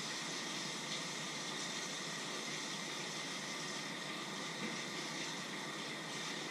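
Pots of water on a stovetop giving a steady, even hiss as they heat.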